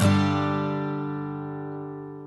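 Acoustic guitar music: a chord struck right at the start rings out and slowly fades, after a quick run of plucked notes.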